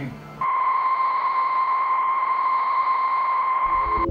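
A steady, high-pitched electronic tone over a faint hiss, starting about half a second in and holding one pitch.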